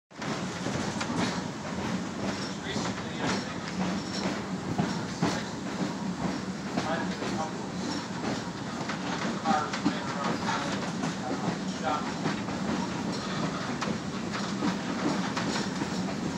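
Chicago, North Shore & Milwaukee interurban car 251 heard from inside the car while it rides: a steady rumble of wheels on rail with irregular clicks and rattles from the car body.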